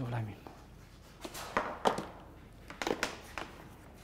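A few short clicks and knocks from handling a plunge router and plugging in its power cord. The router's motor is not running.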